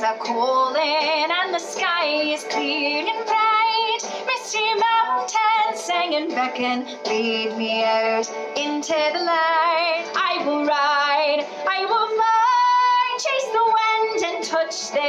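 A woman singing a song with vibrato over instrumental accompaniment.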